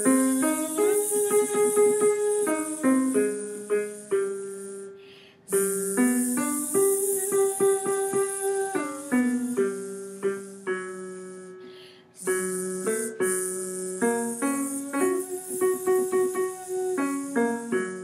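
A keyboard piano plays the Do–Mi–So–Do–So–Mi–Do arpeggio warm-up three times over, each run climbing to a held top note and stepping back down. A voice buzzes along on a sustained "Z".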